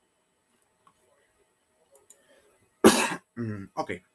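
A man coughs once, a short loud cough about three seconds in, after near silence broken only by a few faint clicks.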